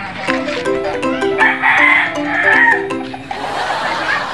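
A rooster crowing once, about a second and a half long, over a short tune of quick stepped notes.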